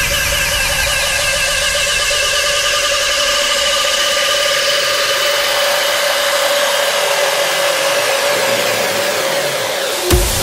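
Rawstyle track in a build-up section: a held, distorted synth tone over sweeping noise, with the bass gradually filtered away in the second half.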